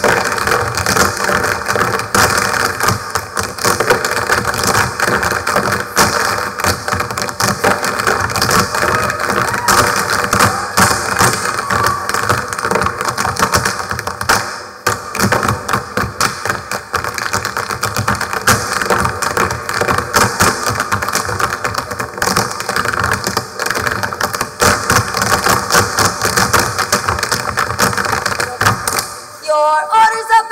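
A group of tap dancers' tap shoes striking the stage floor in fast, dense clicking rhythms, many feet together, over backing music.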